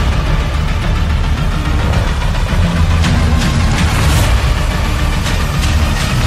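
A large SUV's engine drones deep and steady under load, mixed with soundtrack music. Several short hissing sweeps come in the second half.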